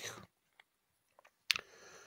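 A pause in a man's speech: his last word dies away, then near silence broken about one and a half seconds in by a single short mouth click, a lip smack, with a faint hiss after it.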